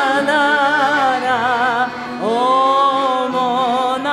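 A woman singing long held notes on "la" with a wide vibrato. The first note ends a little before halfway, and a second long note starts just after it.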